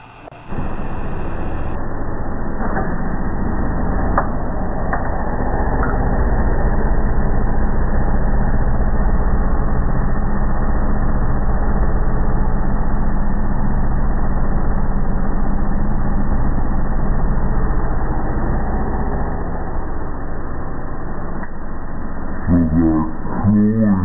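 LG gas clothes dryer running: a loud, steady hum and rush from the drum and blower, with a few light clicks in the first few seconds.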